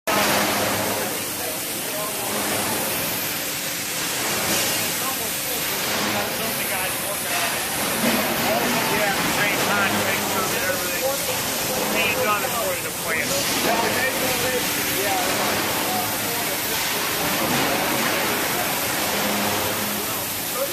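Indistinct voices of several people talking over a steady, noisy industrial-hall background with a low hum.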